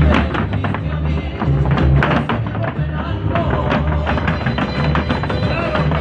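Mexican folk dance music played loud over a sound system with a pulsing bass beat, and the dancers' zapateado heel-and-toe stamping tapping sharply on the stage through it.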